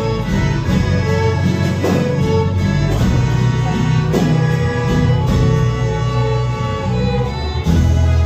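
A church ensemble of violins and guitars playing a hymn: a sustained violin melody over strummed guitar chords and a steady bass.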